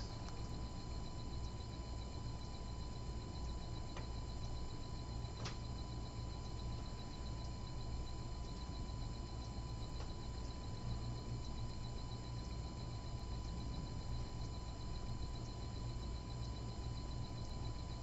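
Room tone: a steady low electrical hum under a faint, steady high-pitched whine, with two faint ticks a few seconds in.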